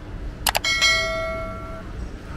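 Subscribe-button animation sound effect: a quick double mouse click, then a bright bell ding that rings out and fades over about a second.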